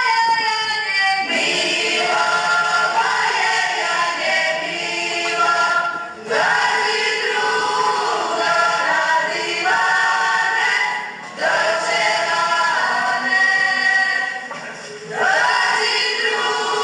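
A folk ensemble's group of mainly women's voices singing a traditional Croatian folk song in chorus, in phrases of about four to five seconds separated by short breaks, each phrase opening with an upward slide.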